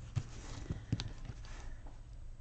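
A few light taps and clicks from hands pressing down the pages of a disc-bound paper planner and picking up a pen on a hard tabletop, over a low steady hum.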